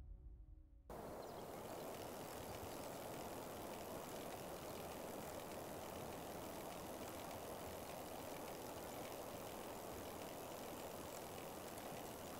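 Faint, steady rushing outdoor ambience with no distinct events, starting about a second in as the last of the music dies away.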